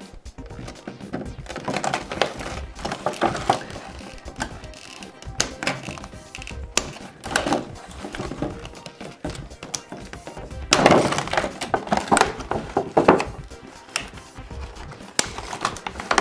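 Scissors snipping and the clear plastic and cardboard of a doll's box crackling as the doll is cut out of its packaging: a run of sharp clicks and crinkles, loudest about eleven to thirteen seconds in. Music plays underneath.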